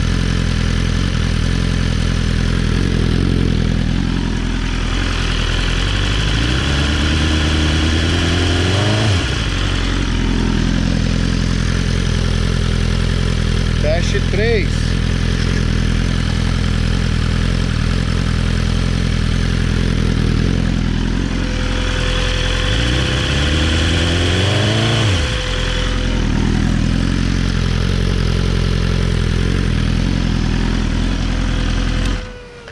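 2020 BMW S1000RR inline-four idling through a titanium full-race exhaust with its dB Killer insert fitted. The engine is revved up twice, each time climbing for about three seconds and then dropping suddenly back to idle. These are stationary noise-test run-ups toward the 3,000 rpm test speed, and the meter reads no more than 93 dB, within the legal limit.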